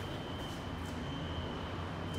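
A steady low hum with a thin, steady high-pitched whine over it, and a few soft rustles or clicks about half a second in.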